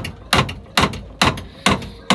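Bobo's Thumper fish attractor knocking against a boat's hull in a steady, even rhythm, a little over two thumps a second.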